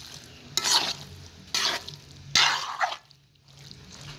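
A large spoon stirring thick soya-bean and tomato stew in a big metal pot: three wet scraping strokes about a second apart, with a faint frying sizzle between them and a short lull near the end.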